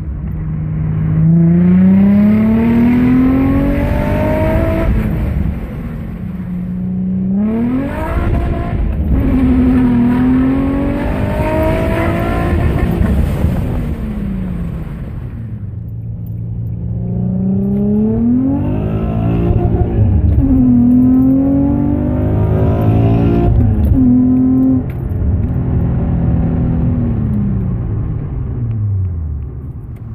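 Infiniti G35 Coupe's 3.5-litre VQ35DE V6 on hard acceleration, heard from inside the cabin, breathing through an aftermarket NWP 75 mm throttle body and Motordyne exhaust. The engine note climbs in pitch through the revs several times, dropping sharply at each gear change. Near the end the revs fall away as it comes off the throttle.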